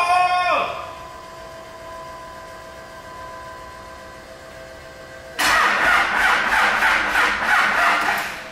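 Cummins diesel engine in a Dodge Ram pickup starting up suddenly about five seconds in, running loud with a rapid pulsing through the open exhaust stack.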